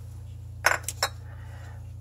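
A few light metallic clinks in quick succession a little under a second in, over a steady low hum: small metal parts, such as the metal-bodied fuel filter, knocking against metal as they are handled.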